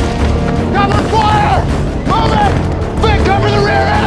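Action-film battle mix: dramatic score music over a dense low rumble of explosions and impacts, with shouting voices that rise and fall.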